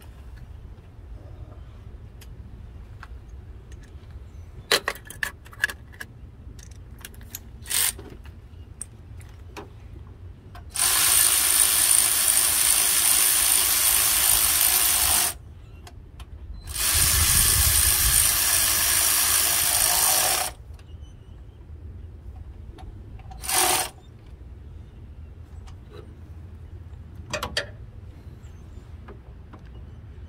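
Cordless power tool running in two steady runs of about four seconds each, then one short blip, driving in the thermostat housing bolts on a Chevy 5.3L V8. Small clicks of hand tools and parts come in between.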